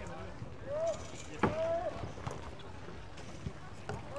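People calling out across open water: two short shouted calls about a second apart, the second longer, over steady outdoor background noise.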